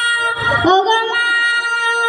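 A child singing a Bengali song through a PA system, holding long notes with a short break about half a second in.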